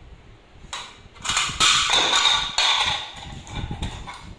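Plastic scraping and rustling in a few loud, rough bursts beginning about a second in and lasting around two seconds, with a quieter scrape near the end.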